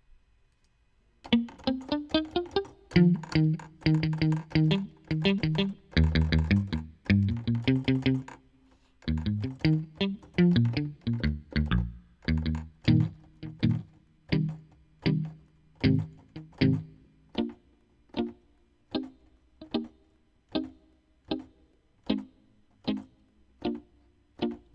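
Logic Pro X 'Muted Electric' software guitar patch played as short, palm-muted plucked notes from a MIDI keyboard, starting about a second in. Quick runs come first, then single notes spaced about two a second.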